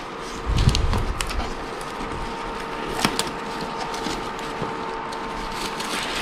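Thin gift-wrapping paper rustling and crinkling as a wrapped box is handled and unwrapped, with soft low handling bumps about a second in. A faint steady hum runs underneath.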